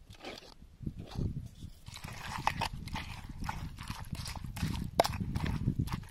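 Wooden pestle knocking and pounding in a mortar, working a wet chilli sauce, in a run of uneven knocks, two or three a second.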